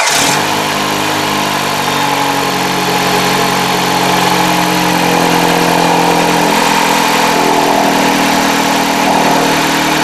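2009 Dodge Avenger's 2.4-litre four-cylinder engine idling steadily just after being started, with the electric secondary air injection pump running alongside it and a steady whine over the idle.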